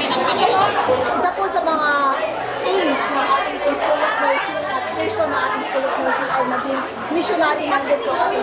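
Speech and the chatter of many voices in a large hall.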